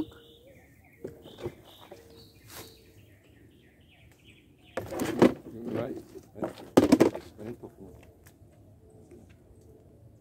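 A small bird chirps repeatedly in quick, short high notes through the first few seconds, outdoors among bushes. About five and seven seconds in come two loud, brief bursts of close noise.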